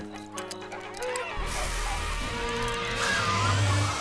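Background score with a cartoon ray-gun blast sound effect. The blast comes in about a second and a half in as a dense rushing noise with a low rumble, lasting about two seconds.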